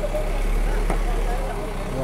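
Steady low engine hum of heavy machinery running, with several voices talking in the background.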